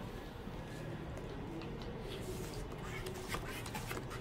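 Low background murmur of a room with a few faint, light clicks of casino chips and playing cards being handled at a blackjack table, mostly in the second half.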